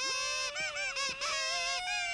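Child's plastic toy horn blown in one long run of honking notes. The pitch warbles quickly up and down in the middle, then settles on a few held notes.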